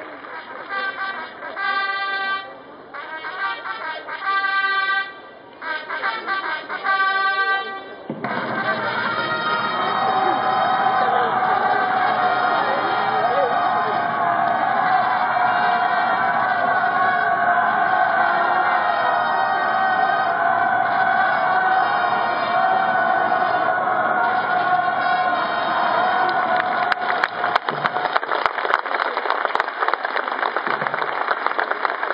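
Mounted military band playing: a series of short held chords for the first several seconds, then continuous full-band music. A patter of clicks comes in near the end.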